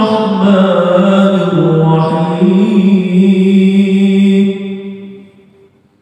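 A man chanting a Quranic verse in Arabic (tilawah), drawing out long melodic notes that slide between pitches. The last note is held and fades out about five seconds in.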